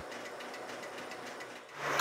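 Filling-station fuel dispenser pumping diesel into a car: a steady mechanical hum with a fine, even rattle, fading slightly near the end.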